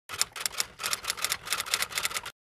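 Typewriter keys clacking in a quick, uneven run of sharp strikes, used as a sound effect for text being typed out.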